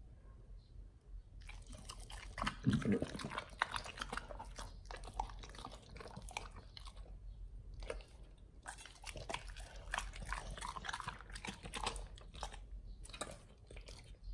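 Pit bulls chewing and biting hand-fed raw yellowfin tuna: wet, smacking bites and chews that start about a second and a half in, pause briefly around seven to eight seconds, then resume.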